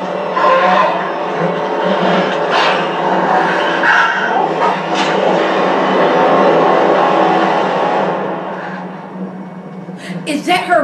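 A pack of wolves growling and snarling on the episode's soundtrack, played through the TV or computer speakers. The sound fades down near the end.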